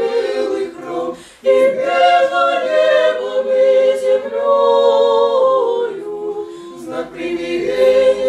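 Small mixed choir of five men's and women's voices singing Russian Orthodox church chant a cappella, in held chords. The phrase breaks off briefly about a second and a half in, then resumes with long sustained chords that soften near the end before a new phrase begins.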